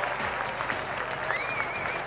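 Audience applauding with steady clapping.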